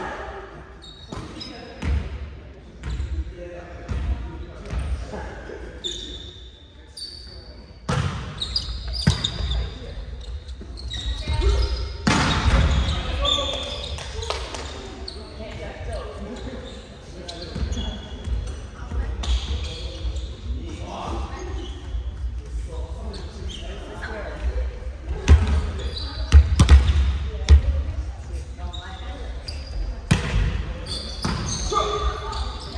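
A volleyball being struck again and again during a rally in a gymnasium, with sharp hits of the ball ringing in the hall among the players' shouts and calls; the loudest run of hits comes near the end.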